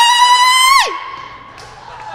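A woman's shrill, high-pitched vocal cry into a microphone, done as a comic impression. It holds one steady pitch for under a second, then slides sharply down and breaks off.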